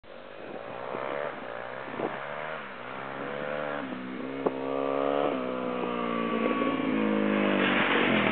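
Dual-sport motorcycle engine approaching, revving up through the gears: the pitch climbs and drops back with each of several upshifts, and the sound grows steadily louder as it nears. There is a sharp click about halfway through.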